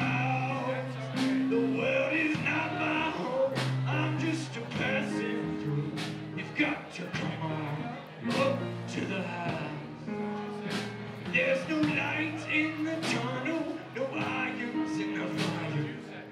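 Live rock band playing a gospel-blues song: electric guitars, electric keyboard, bass and drums, with regular drum and cymbal strikes over held bass notes.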